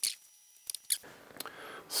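A few quiet, sharp computer clicks, spaced irregularly: one at the start, then two close together just under a second in, from a laptop being operated.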